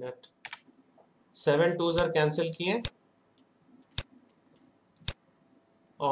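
A man speaks briefly, then two sharp clicks sound about a second apart with a few faint ticks around them: clicking at a computer while pen annotations are drawn on a lesson slide.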